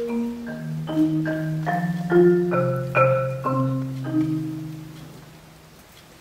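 Concert marimba played with mallets: a phrase of struck notes a few tenths of a second apart over low notes ringing underneath, which dies away about five seconds in.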